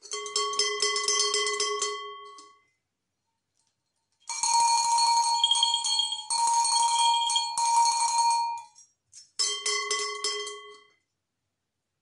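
Cowbells shaken by hand, clanking rhythmically in three bursts. A large brass cowbell with a lower ring sounds for about two and a half seconds. A small painted cowbell with a higher ring follows for about four seconds. The large bell comes in again briefly near the end.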